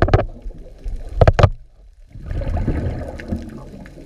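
Water sloshing and gurgling around a camera held underwater, with sharp knocks just after the start and a louder pair about a second and a quarter in. The noise breaks off briefly near the middle and comes back fainter.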